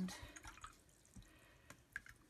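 A few faint, sharp ticks, most in the first second and two more near the end: watercolour paint being flicked from a brush in splatters onto the smooth plastic Yupo sheet.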